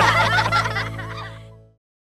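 The end of a children's song: a held closing chord fades away under a flurry of quick, warbling giggles, dying out just before the end.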